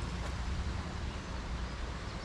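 Steady outdoor background noise dominated by a low rumble, with no distinct events.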